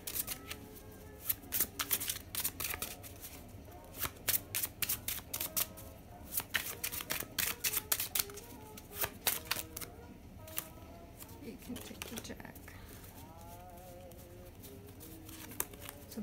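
A deck of paper playing cards being shuffled by hand: a quick run of card snaps and riffles for about ten seconds, then quieter handling as a card is dealt onto the table.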